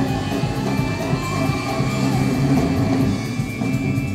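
Live rock band playing, with guitar over bass and drums.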